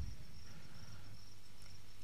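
Faint, steady high-pitched trill of an insect such as a cricket, over a low steady hum.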